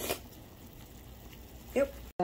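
A pot of instant noodles simmering on the stove: a faint, even hiss, with a brief rustle right at the start.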